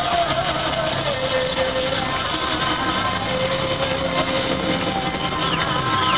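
Live band music played through a big open-air stage PA, heard from within the crowd: a dense, steady band sound with long held notes.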